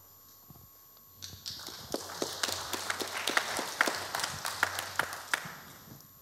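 Audience applauding: scattered claps starting about a second in, building into steady applause and tapering off near the end.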